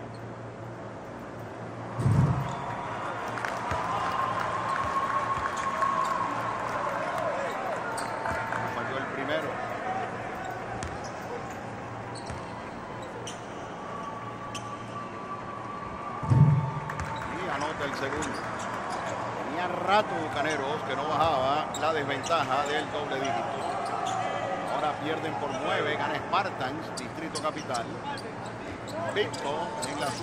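Basketball thudding during free throws: two loud thumps, about two seconds in and again about sixteen seconds in, with voices calling out in the gym.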